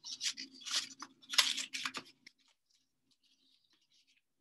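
Folded paper strips rustling and crinkling as they are handled and pulled out into an accordion, in several short rustles that stop about two seconds in.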